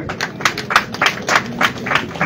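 People clapping hands in a quick, fairly steady rhythm, about four claps a second.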